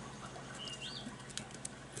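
Quiet hand-handling of a sheet of origami paper as it is lined up for a fold, with a few faint ticks. A faint high chirp, held briefly and then rising and falling, comes just over half a second in.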